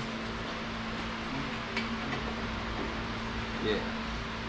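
A steady mechanical hum in the room, with a few faint light clicks of bolt hardware being handled and hand-threaded.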